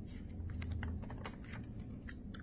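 A scatter of faint, irregular clicks and taps as the pages of a picture book are handled and turned by hand.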